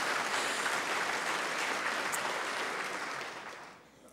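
A large seated audience applauding, the applause fading away over the last second.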